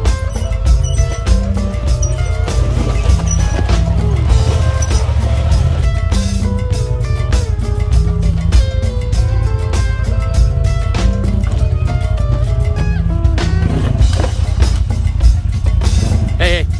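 Background music with a steady beat and a heavy, stepping bass line.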